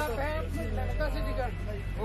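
Low, steady rumble of a bus engine heard inside the passenger cabin, growing stronger at the start, with several people's voices talking over it.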